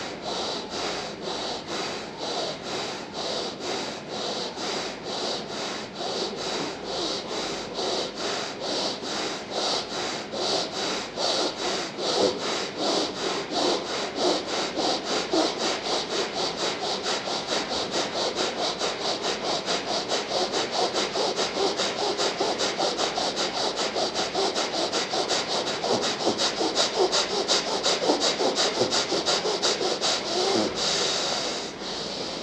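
Rapid, rhythmic, forceful breathing in and out through the nose: bhastrika (bellows) pranayama, a quick even train of breaths that grows louder after about twelve seconds.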